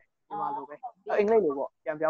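Only speech: a man talking, lecture narration.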